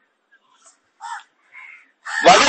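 A crow cawing faintly, with two short caws about a second in and half a second apart.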